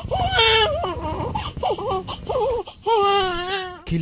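Newborn baby crying: a run of short, wavering wails, then a longer held cry near the end.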